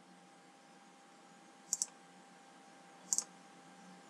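Two computer mouse-button clicks, each a quick double tick of press and release, about a second and a half apart, from a Logitech B175 wireless mouse placing line points in a CAD sketch.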